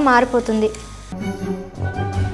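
Masala sizzling and frying in a pan as a spoon stirs it. Background music comes in about a second in.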